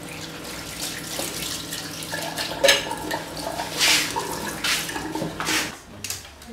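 Water running from a kitchen tap into a sink, steady, with several louder splashes in the second half.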